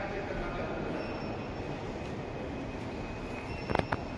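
Steady ambient noise of a large airport terminal hall: a low, even rumble with faint high steady tones over it, and two sharp clicks near the end.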